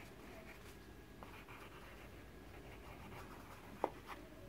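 Pencil writing on a paper textbook page: faint scratching of the graphite on the paper, with one short click near the end.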